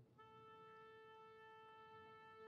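Orchestra tuning: a wind instrument holds a faint, steady tuning A. The note breaks off for a moment at the start and is taken up again.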